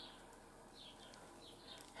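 Near silence: room tone, with a few faint, short, high-pitched chirps.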